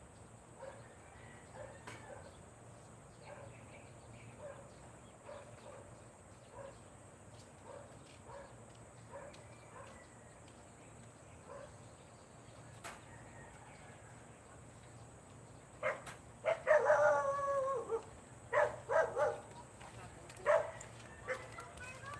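Animal calls: faint short chirps repeat for most of the time, then loud calls come in near the end. First a drawn-out call falling slightly in pitch, then several short calls.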